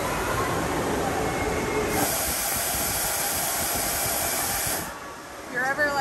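Air blower jetting from small holes in a wall, a steady hiss of rushing air that grows louder about two seconds in and cuts off suddenly near five seconds. It is a drying station that blows air on wet or hot guests.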